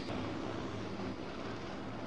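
Steady outdoor rumble and wind noise with a faint low hum, even throughout.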